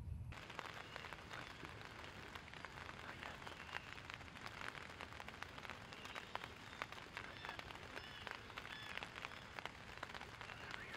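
Light drizzle falling: a faint, steady hiss of rain with many small drop ticks.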